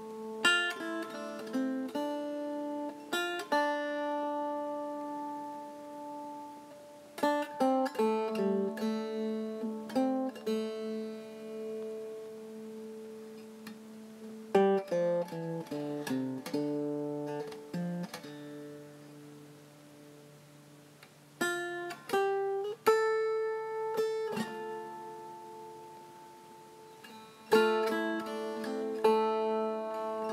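Slow guitar music, apparently acoustic: short clusters of plucked notes and chords that are left to ring out, with a run of falling low notes about halfway through.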